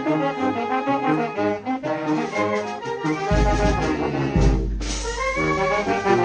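A youth wind band playing live: saxophones, clarinets, trombones and trumpets over drums, in a steady rhythmic tune. Two heavy low rumbles sound in the middle.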